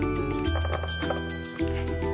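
Background music with held notes over a low bass line.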